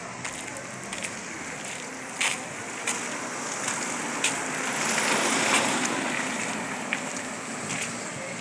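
Outdoor street noise on a handheld phone's microphone: a rushing hiss that swells to a peak about five seconds in and then fades, with scattered clicks.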